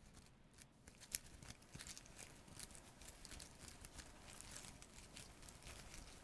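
Very faint, sparse crackling and ticking, with one sharper click about a second in: the small rustle of ants tugging at a dragonfly's remains in moss.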